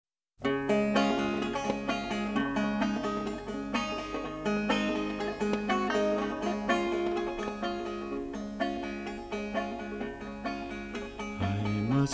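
Instrumental introduction to a folk song on a solo plucked string instrument, picking a steady repeating pattern of notes. A man's singing voice comes in just before the end.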